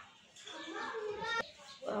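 A person talking, with one short sharp click about one and a half seconds in.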